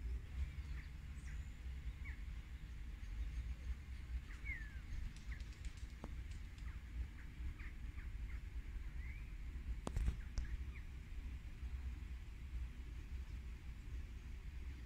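Birds chirping now and then in short calls over a steady low rumble, with a couple of sharp clicks partway through.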